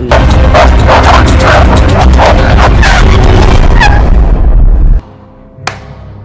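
Loud film soundtrack of a violent fight: dramatic music over a rapid flurry of sharp blows and short cries. It cuts off suddenly about five seconds in, and a single sharp hit follows.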